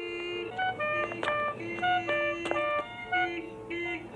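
Light instrumental background music: short, bouncy notes hopping in pitch over held lower notes, with a couple of sharp clicks.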